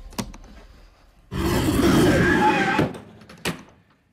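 A leather suitcase rattling and knocking from inside as something in it stirs: a sharp click near the start, about a second and a half of dense rattling in the middle, and another sharp click near the end.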